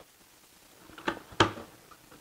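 Cardboard shoebox lid being lifted off its box: about a second of quiet, then two short knocks in quick succession, the second louder.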